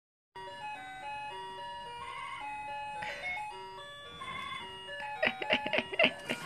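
A simple electronic tune of single beeping notes stepping up and down, like a toy's or ice-cream-van jingle. Near the end a quick run of sharp clicks cuts in.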